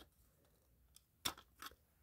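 Near-silent handling, with a sharp click a little over a second in and a fainter one soon after: a flathead screwdriver prying at the plastic clips of an SA303 smoke detector's housing.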